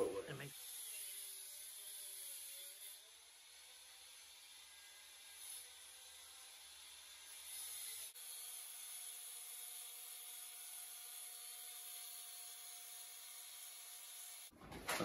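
Faint steady hiss with a few faint thin tones, which change abruptly about eight seconds in. The angle grinder seen cutting makes no loud grinding here: the soundtrack is almost quiet.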